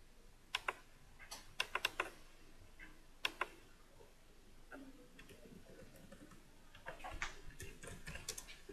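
Faint clicks of a computer keyboard and mouse: a few single keystrokes, a quick run of four or five about two seconds in, and another cluster near the end.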